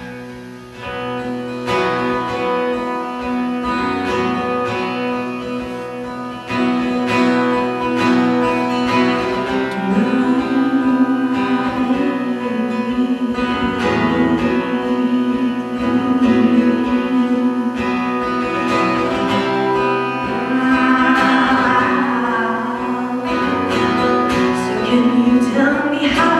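Acoustic guitar playing alone at first, then a woman singing over it into a microphone after several seconds, live through a PA.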